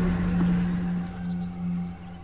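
Background score holding a steady low drone under the fading rumble of a blast sound effect, dying away toward the end.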